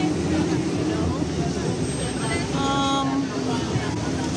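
Voices of a small outdoor crowd over a steady low engine hum. A brief tone with several pitches sounds a little before three seconds in.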